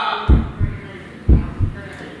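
Heartbeat sound effect: a deep double thump, lub-dub, repeating about once a second, twice here, used as a suspense cue.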